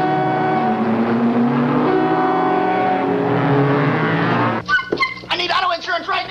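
Car engines running and revving, several engine pitches gliding up and down together. About three-quarters of the way in they cut off abruptly and a man starts talking.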